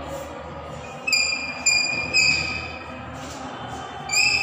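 Three high-pitched steady tones in quick succession, starting about a second in and each lasting about half a second, over a low steady hum.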